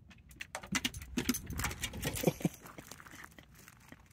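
A dog stepping out of a truck camper doorway and walking onto desert gravel: an irregular run of light clicks and footsteps on gravel, with a few short squeaks.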